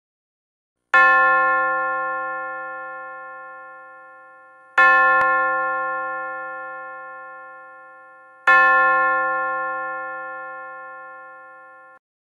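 A bell struck three times, a little under four seconds apart, each strike ringing with several steady tones and slowly fading; the last ring cuts off suddenly near the end.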